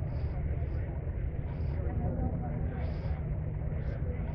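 Steady low rumble of wind buffeting the microphone outdoors, with faint, indistinct chatter of people talking in the background.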